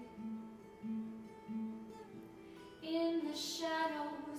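Acoustic guitar playing a repeating picked pattern, about one note every two-thirds of a second; a woman's singing voice comes in about three seconds in.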